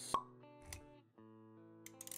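Intro-animation sound effects over soft background music with held notes: a sharp pop just after the start, then a soft low thud less than a second later.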